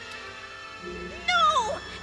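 A short, shrill cry sliding down in pitch with a wavering tail, about a second and a quarter in, over soft background music.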